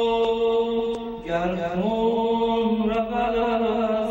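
A young man singing a slow Persian song into a handheld microphone, holding long sustained notes, with one shift in pitch a little over a second in.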